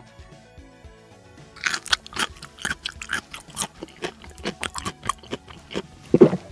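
Crunchy chewing and biting sounds, a rapid irregular run of crunches starting about a second and a half in, over soft background music.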